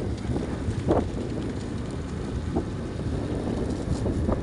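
Wind rushing over the microphone above a steady low rumble, as from a moving vehicle.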